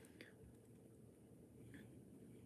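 Near silence: room tone, with one faint click just after the start and a faint brief breath or mouth sound near the end.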